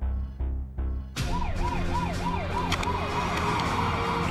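Siren on a police vehicle, starting abruptly about a second in and wailing up and down in pitch about three times a second. It plays over a dramatic film score with heavy low drum beats.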